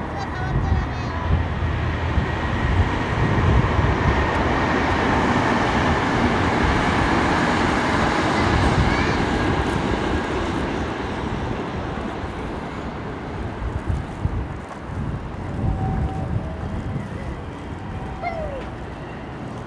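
Rushing noise of a passing vehicle, swelling over the first few seconds and fading away after about ten seconds.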